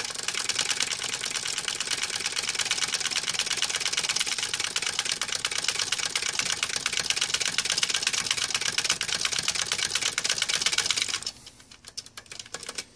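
Push-button switches on an Onkyo TX-26 stereo receiver clicking rapidly over and over as they are worked in and out to spread DeoxIT D5 contact cleaner over their contacts. The clicking stops abruptly about 11 seconds in.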